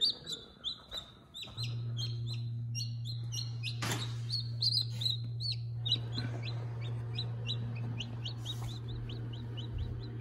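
Newly hatched chicks peeping: many short, high, falling chirps in quick succession. A steady low hum comes in about one and a half seconds in and keeps on, with a single sharp click about four seconds in.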